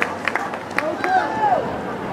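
Voices calling and shouting on the field and sideline of an outdoor lacrosse game, with a few short sharp clacks.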